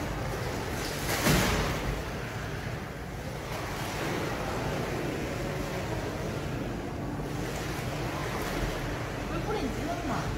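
Pool water splashing and sloshing as a beluga whale surges at the pool's edge and pushes water up onto the ledge, with a louder splash about a second in.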